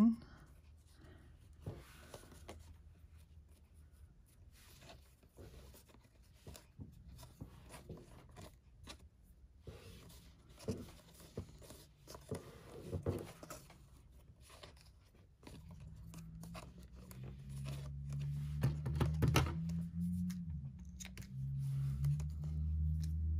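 Faint rustling and small clicks of hands tying twine into a bow around a clear plastic card box. In the last several seconds a low, steady hum rises underneath.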